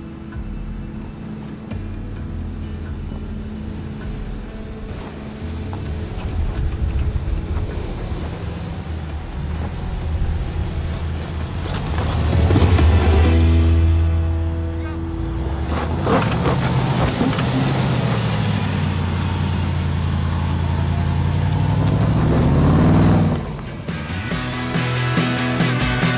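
Range Rover Sport's engine pulling under load as the SUV crawls up a steep rocky trail, with tyres grinding over rock and loose stones; it gets louder for a couple of seconds about halfway, and the revs climb near the end.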